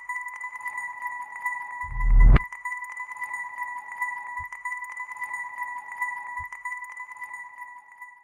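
Electronic outro sound design under the channel's end card: a steady high tone sounding at two pitches an octave apart, with a low swelling whoosh that builds and cuts off with a hit about two seconds in. Two soft low thuds follow later.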